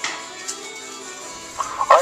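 Raven calls: a sharp call at the start and another about half a second in, then a louder run of calls near the end, over faint music.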